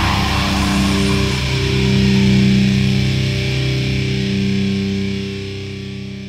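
Nu metal music ending on a held, distorted electric guitar chord that rings on and fades away near the end.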